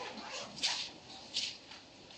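Bible pages being turned: three short, soft paper rustles about a second apart, over a faint room murmur.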